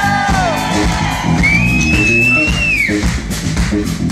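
Live blues-rock playing on acoustic guitar and electric bass, with bass notes running steadily underneath. Around the middle a long high note is held, then bends down and fades away.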